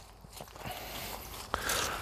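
Faint footsteps crunching on grass and gravel as a person walks, a little louder in the second half.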